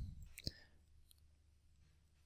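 A single computer mouse click about half a second in, followed by near silence.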